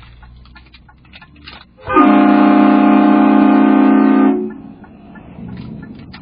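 Aftermarket train horn on a car, a Horn Blasters Conductor Special kit, sounding one long steady blast of about two and a half seconds, several notes held together as a chord, starting about two seconds in.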